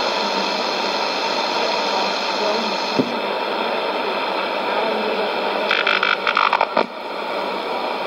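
Sony ICF-2001D shortwave receiver on a weak AM broadcast: steady static and hiss with a voice faint beneath it. About six seconds in comes a short burst of crackle and a brief drop in level as the receiver is retuned from 11660 to 12005 kHz, then the hiss returns.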